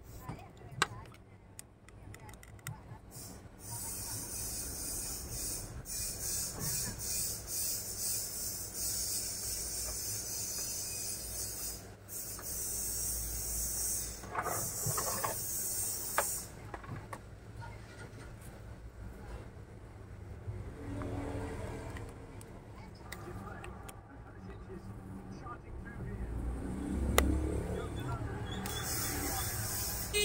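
Plastic clicks, knocks and rubbing as an Epson inkjet printer's casing is taken apart by hand with a screwdriver. A steady high hiss starts abruptly a few seconds in, stops about halfway through and comes back near the end.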